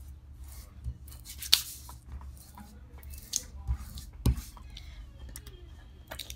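Fingers rubbing and pressing transfer tape down onto a vinyl decal sheet to burnish it by hand, with no scraper: soft scratchy rubbing with a few sharp clicks and crackles of the tape and backing.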